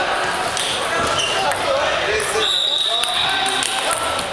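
Table tennis balls clicking irregularly on tables and bats around a busy table tennis hall, with voices talking.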